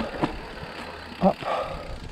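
Mountain bike rolling over rocky, rooty dirt singletrack: steady tyre and trail noise with a couple of sharp knocks and rattles from the bike near the start.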